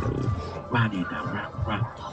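Beatboxing in a steady rhythm: deep low bass tones between sharp percussive hits.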